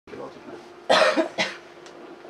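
A person coughing twice: a loud cough about a second in, then a shorter one.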